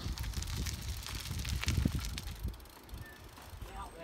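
Road bicycle riding past on a road, with wind rumbling on the microphone and scattered light clicks.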